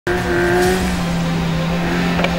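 Suzuki Jimny rally car's engine running under load at steady high revs, holding one even pitch as it drives along a dirt track.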